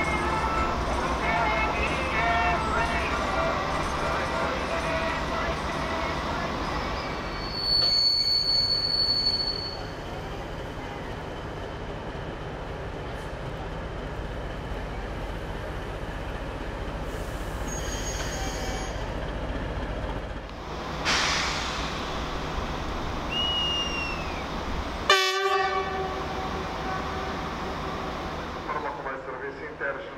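Railway station sound with a train's low, steady engine hum and voices at first. A high, shrill whistle blows for about a second and a half around eight seconds in, and a short train horn blast sounds near the 25-second mark.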